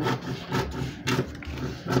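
Scissors cutting through a paper sleeve pattern: a few short snips about half a second apart, with paper rustling.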